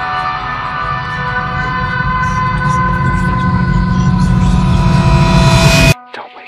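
The end of a band's song: a held chord rings on while a low rumbling noise swells underneath and keeps growing louder, then the whole sound cuts off abruptly just before the end.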